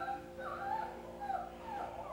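A dog whining softly in short, high, rising-and-falling whimpers over a steady low hum.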